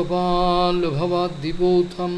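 A man's voice chanting a Sanskrit prayer verse in a slow recitation tone, holding long notes on a steady pitch with short glides between syllables.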